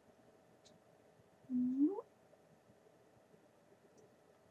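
A short, rising closed-mouth hum from a woman's voice, about a second and a half in, held briefly and then gliding up in pitch like a questioning "hmm?". Otherwise the room is quiet.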